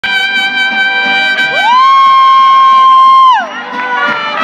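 Mariachi band playing live: violins over strummed guitars and guitarrón in a steady rhythm. One long note slides up about one and a half seconds in, is held, then drops away shortly before the end.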